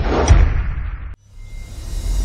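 Cinematic trailer sound effect: a deep booming whoosh with heavy low rumble that cuts off suddenly about a second in, followed by a quieter rising swell.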